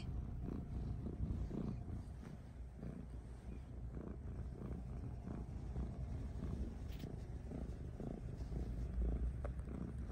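Black-and-white domestic cat purring close to the microphone, a steady low rumble.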